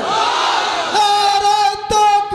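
A man's voice in the sung, chanted delivery of a Bengali waz sermon. A falling vocal glide comes first; about a second in, a long, high note with vibrato is held.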